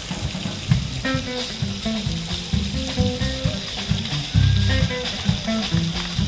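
A live band plays: an electric bass picks out a line of short low notes, with a few higher guitar notes over it. The drum kit keeps a steady hiss of cymbals beneath, with light stick ticks, after louder full-kit drumming.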